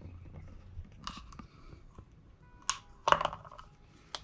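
Scissors cutting black heat-shrink tubing: a few short snips, the loudest a little after three seconds in.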